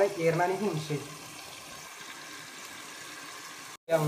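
A voice briefly in the first second, then the faint, steady hiss of a lidded steel pot of rice simmering on the stove, which stops abruptly just before the end.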